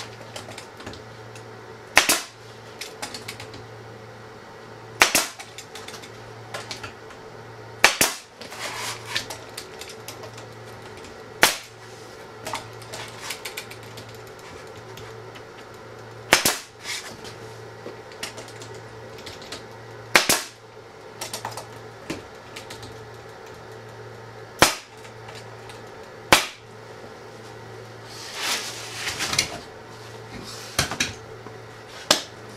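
Pneumatic air stapler firing staples into a glued plywood panel: eight sharp single shots spaced two to five seconds apart, over a steady low hum.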